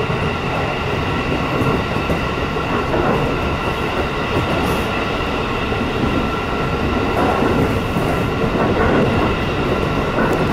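Inside a JR East Shin'etsu Line electric train running at speed: the steady rumble of the car on the rails, with a few thin, steady, high tones running through it.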